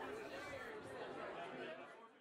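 Faint, indistinct chatter of several people in a room, fading out near the end.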